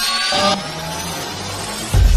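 Electronic intro sting for a logo animation: a rising synthesized glide over a noise swell, with the deep bass gone, then a sudden deep bass hit near the end.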